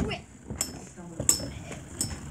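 Two short, light clicks about three-quarters of a second apart, from Beyblade tops and launchers being handled while a battle is readied.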